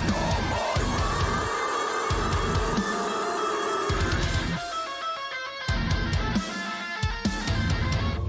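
Heavy metal song with heavily distorted electric guitars and drums: low chugging riffs stop and start in short blocks, with a long held high note over the first half.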